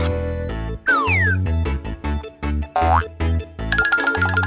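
Bouncy children's cartoon background music with a steady bass line, overlaid with comic sound effects: a falling whistle-like glide about a second in, a quick rising glide near three seconds, and a shimmering high chime starting near the end.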